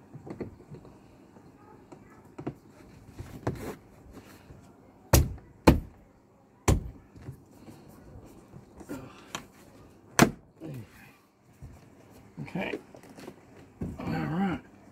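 Plastic clips of a car door panel's armrest trim snapping into place as the trim is pressed on by hand: four sharp clicks spread over several seconds, with quieter handling rustle between.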